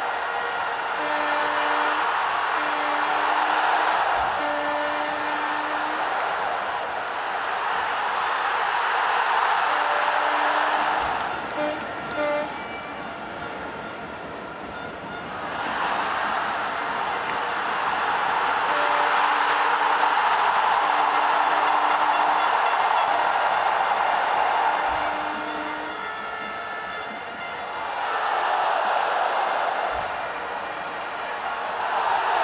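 A large football stadium crowd roaring in surges that swell and fade, with repeated long blasts from horns in the stands, each held at one steady pitch for about a second.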